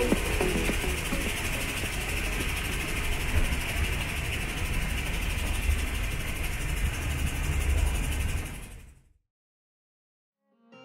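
Mount Washington Cog Railway steam train heard from alongside its coach: a steady low rumble with rushing noise, fading out near the end.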